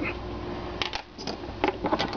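A few short clicks and knocks of handling as the wooden carving is picked up and brought toward the camera, over a steady low hum.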